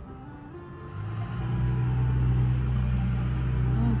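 An engine starts running close by about a second in, a steady low hum that swells and then holds at an even pitch.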